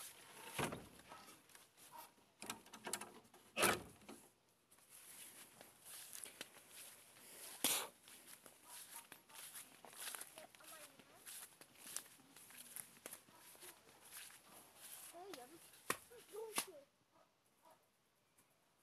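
Footsteps through grass and plants rustling against a handheld camera, with a few sharp knocks: the loudest about half a second in, near 4 s and near 8 s.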